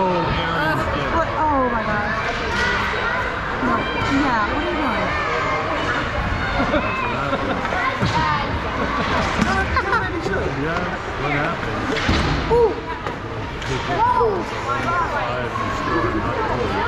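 Echoing ice-rink ambience during a youth hockey game: many overlapping, indistinct voices of players and spectators, with scattered knocks of sticks and puck on the ice and boards.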